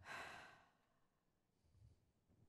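A person's short breath close to a microphone, lasting about half a second at the start, then near silence.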